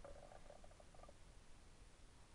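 Near silence, with faint quick ticking during the first second that then fades.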